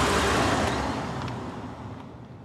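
A deep, rumbling rush of noise that is loudest at the start and slowly fades away.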